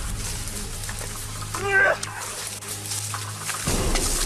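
A short, high-pitched cry whose pitch bends up and down, about two seconds in, over a steady low hum that cuts off near the end.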